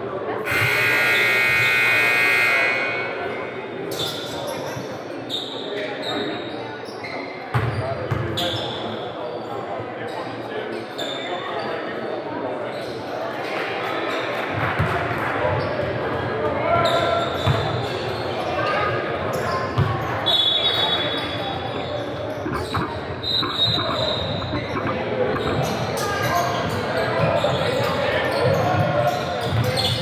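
Gym scoreboard buzzer sounding steadily for about two seconds, then basketballs bouncing on a hardwood court amid voices, with the echo of a large gym and a few short high squeaks in the second half.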